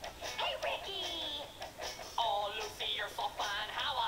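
A recorded song playing: a sung vocal line over accompaniment, with held, wavering notes and sliding pitch.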